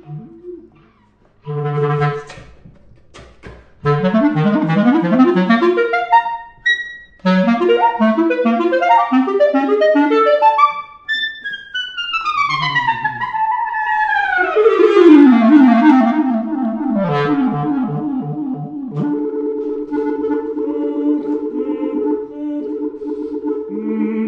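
Solo clarinet playing a cadenza: fast runs of notes broken by short pauses, then a long downward glide. Near the end it holds steady notes with a second pitch sounding along with the played note, the player singing into the instrument while playing.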